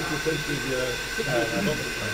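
Soft conversational voices over a steady high-pitched whine and hiss from running distillery plant in a still house.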